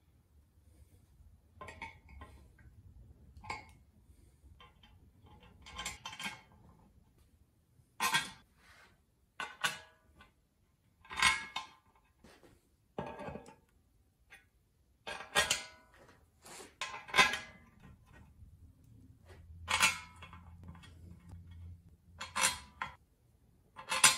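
Irregular sharp metal clinks and taps, a dozen or so spread unevenly with gaps between, some ringing briefly: a steel drift and hardware knocking against a cast-aluminium oil pan while the pan gasket is lined up on an LS engine block.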